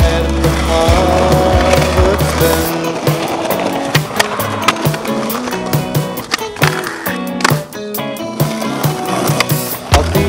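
Skateboard sounds, with wheels rolling on concrete and the board clacking on pops and landings, over loud background music. The music's low bass drops out about three seconds in.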